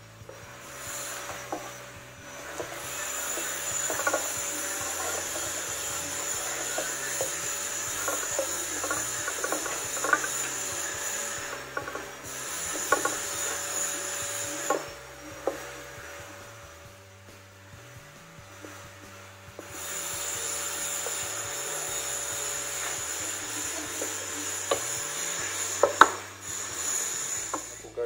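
A wooden spatula scraping and stirring noodles against a nonstick frying pan, with frequent knocks of the spatula on the pan. The scraping pauses briefly midway, stops for a few seconds, then resumes until near the end.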